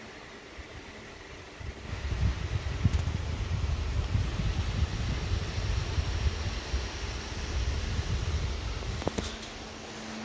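Cooling fans of a running GPU mining rig whirring, with a low, uneven rumble from about two seconds in until near the end.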